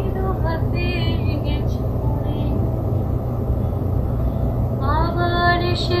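Background song with a high voice singing: a short phrase at the start, then about three seconds with only a steady low hum under it, and the voice comes back in with a rising note near the end.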